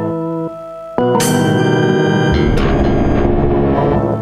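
Korg AG-10 General MIDI sound module playing held, stacked tones under MIDI control. About a second in, a louder, dense cluster of many tones enters with a bright attack, and a deep low layer joins a little past the middle.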